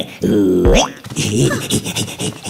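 An animated character's wordless cartoon voice: a short falling vocal sound that ends in a quick, springy upward glide like a boing.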